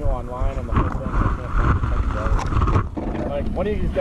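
Several people talking in the open, the voices indistinct, over a steady low rumble.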